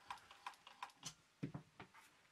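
Faint, irregular ticking, about three ticks a second, from the mechanism of a Sangamo Weston S317.1.22 synchronous-motor time switch that has jammed on power-up and is not turning steadily in one direction as it should.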